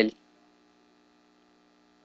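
Faint steady electrical hum in a pause between words, just after a man's word ends at the very start.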